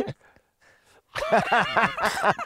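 A man laughing in a quick run of short ha-ha bursts, starting about a second in after a brief hush.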